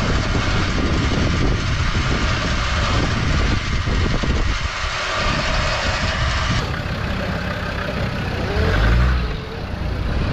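Electric vehicle winch running under its handheld remote, spooling rope onto the drum. About two-thirds of the way through it gives way to a Land Rover Defender's engine idling, picking up briefly near the end.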